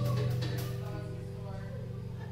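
A single low note on an amplified stringed instrument rings on and slowly fades, with fainter higher notes dying away above it.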